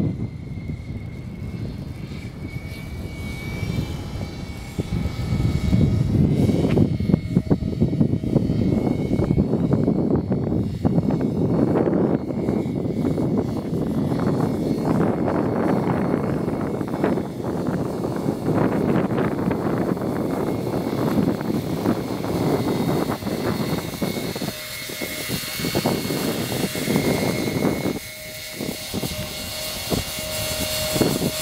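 Radio-controlled scale CV-22 Osprey tiltrotor model in flight, its twin rotors buzzing under a steady rushing noise. Near the end it hovers low over the runway and a steady tone from its rotors stands out.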